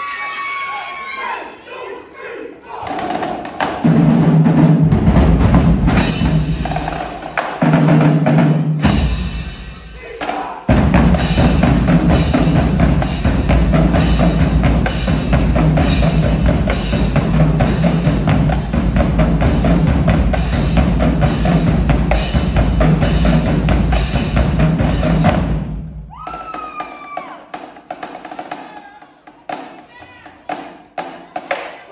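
Marching drumline of snare drums, bass drums and cymbals playing a fast, loud cadence, with two brief breaks about 7 and 10 seconds in. Near the end it drops to a quieter, rapid clicking of sticks.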